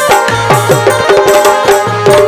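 Instrumental Bundeli folk music: fast, steady drumming on a stick-beaten kettle drum and an electronic drum pad, some low strokes dropping in pitch, over sustained pitched notes.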